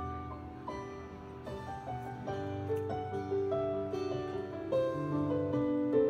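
Live band music with no singing: a melody of held notes that step from one to the next over a bass line, and only faint, light percussion.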